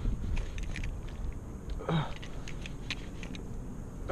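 Fishing reel ticking irregularly as a hooked bass is fought and reeled in, over a low wind rumble on the microphone. A short grunt comes about two seconds in.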